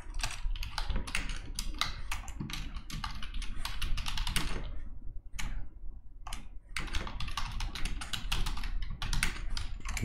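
Typing on a computer keyboard: quick runs of keystroke clicks, with a couple of short pauses about halfway through.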